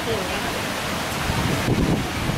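Steady hiss of falling rain, with wind rumbling on the microphone toward the end.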